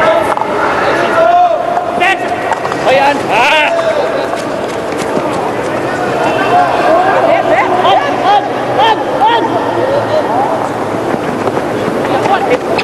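Players' voices shouting and calling to one another across an outdoor field hockey pitch, with a few sharp clacks of stick on ball.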